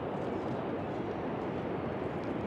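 Steady, even rushing noise of the American Falls at Niagara, falling water heard across the river.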